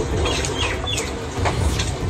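Several short, high chirping bird calls, some rising and some falling in pitch, within the first second, over a steady low rumble of outdoor noise on the microphone.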